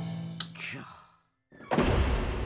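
Cartoon soundtrack: a held music cue fades out with a short click and a brief vocal exclamation, then goes silent for a moment. Near the end comes a sudden loud musical hit that rings out.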